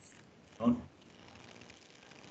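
A single brief voice-like call about two thirds of a second in, over faint room tone of a video-call line.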